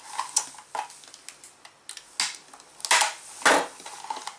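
Thin plastic shampoo bottle clicking and crackling as it is cut with a snap-off utility knife and handled on a wooden board: irregular sharp clicks, the loudest between about two and three and a half seconds in.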